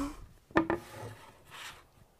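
A wooden board knocked down onto the work table about half a second in, followed by a soft scrape as it is slid into place.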